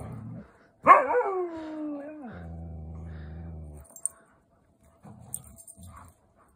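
Siberian husky vocalising during rough play: one loud call about a second in that slides steadily down in pitch, running straight into a low, steady grumble that stops near four seconds. A brief low rumble comes again near the end.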